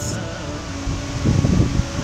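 Wind buffeting the microphone outdoors, with irregular low rumbling gusts in the second half over a steady background hiss.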